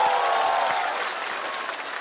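Studio audience applauding after a punchline, the applause fading away through the second half.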